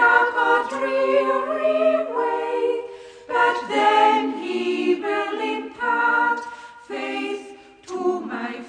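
Choir singing a hymn in sustained, unaccompanied phrases, with short breaks between lines.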